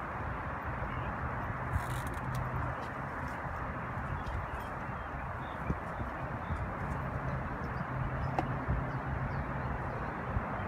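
Steady rush of traffic from a nearby freeway, with a low engine hum that comes and goes and a few faint clicks.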